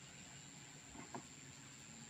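Near silence: faint outdoor background, with one soft tick a little after a second in.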